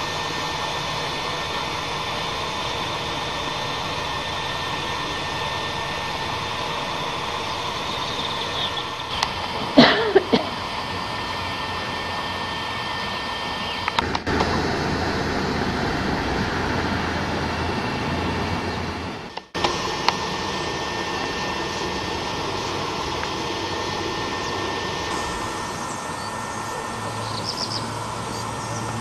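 Steady outdoor background noise with a faint constant whine running through it. About ten seconds in, a brief sliding chirp stands out.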